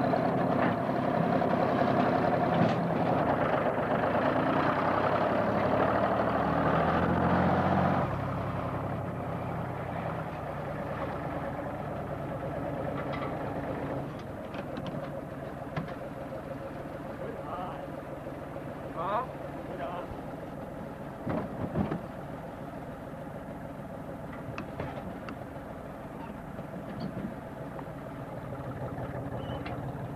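Farm tractor engine running steadily as its front-end loader fills a manure spreader. It is loudest for the first eight seconds, then drops to a lower level, with a few short sharp sounds a little past the middle.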